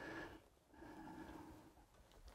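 Near silence: room tone with two faint breaths.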